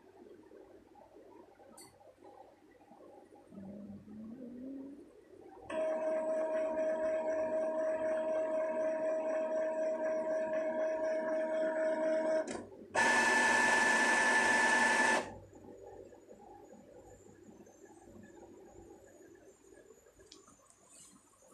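Epson inkjet printer running its motors: a short rising whir a few seconds in, then about seven seconds of steady whirring with a constant whine, a brief break, and about two seconds of louder, higher-pitched whirring.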